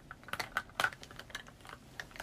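A quick run of light, irregular taps and clicks, about ten in two seconds, like typing.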